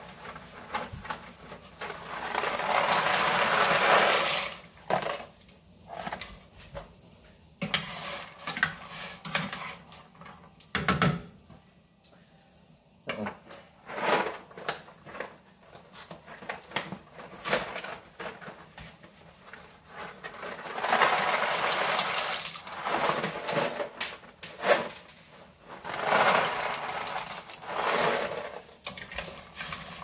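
A cardboard box of dry rigatoni being opened and the pasta rattling and pouring into a pot of boiling water, amid irregular clicks and clatter of kitchen handling, with several longer stretches of rustling and rattling.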